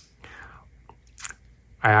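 Buck 110 folding knife's blade being worked on its pivot, with light clicks about a second in as the back spring catches the half stop that was added to the knife.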